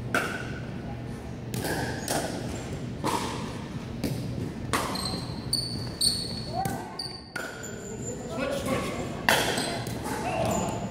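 Pickleball rally: paddles hitting a plastic ball in sharp pops about once a second, echoing in a gymnasium, with short high sneaker squeaks on the hardwood floor.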